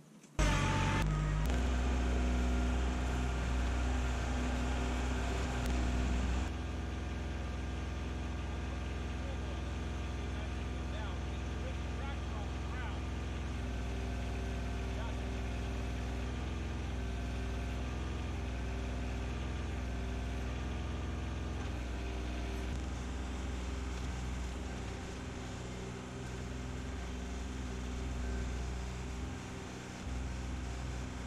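Kubota compact tractor's diesel engine running steadily while its BH77 backhoe is worked, the main boom cylinder failing to pull and not lifting the tractor off the ground. There is a sudden drop in level about six seconds in.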